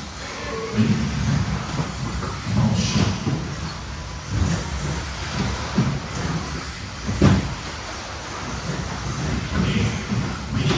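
Electric 1/10-scale 2WD RC buggies racing on an indoor turf track: a shifting mix of motor and tyre noise that rises and falls as the cars pass, with a couple of sharp knocks from cars landing or hitting the track, the loudest about seven seconds in.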